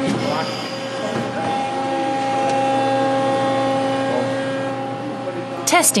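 Plastic injection moulding machine running: a steady industrial hum with several held tones that shift a little about a second and a half in.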